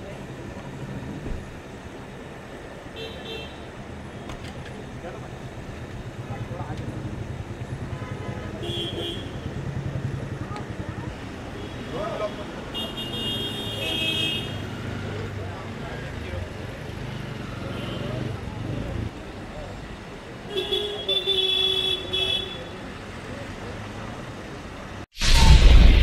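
Car horns honking several times amid street traffic, over a low steady engine hum and crowd chatter.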